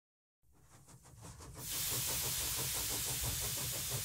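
Steam sound effect: a hiss of escaping steam swells in over the first second and a half and then holds steady, with a soft regular pulsing beneath it.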